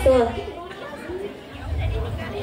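A group of children's voices singing in unison. A held phrase falls and ends just after the start, followed by a short lull of softer voices before the group's sound builds again near the end.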